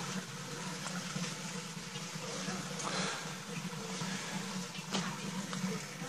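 Faint steady outdoor background: a low hum under an even hiss, with a couple of faint knocks from the handheld phone.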